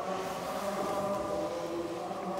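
Background music: a steady drone of several held, choir-like tones.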